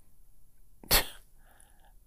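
One short, sharp burst of breath from a man close to the microphone, like a quick huff or stifled sneeze, about a second into an otherwise quiet pause.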